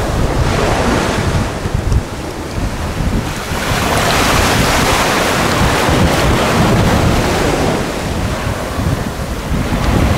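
Small waves washing up onto a sandy beach, the wash swelling and easing, loudest in the middle. Wind buffets the microphone with a low rumble throughout.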